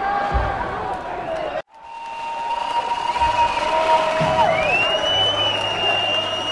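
Concert crowd cheering, with long held whistles rising and falling over the noise. The recording drops out for an instant a little under two seconds in.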